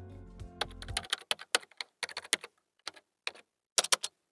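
Computer keyboard typing sound effect: a quick, irregular run of key clicks. Background music ends about a second in.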